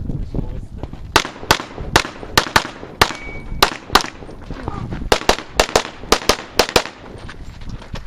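Handgun shots fired rapidly, mostly in quick pairs (double taps), starting about a second in: roughly sixteen shots with short pauses between strings as the shooter engages targets through the ports.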